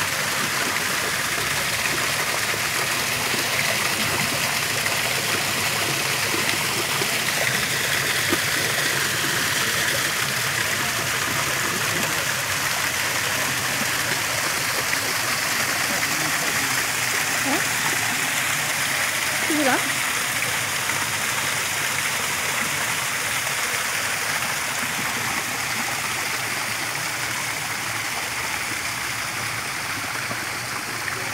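Man-made stone waterfall pouring over stacked rocks into a pond: a steady rush and splash of falling water.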